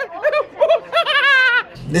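A man's playful nonsense vocalizing in short pitched sounds, ending in a longer quavering cry about a second in.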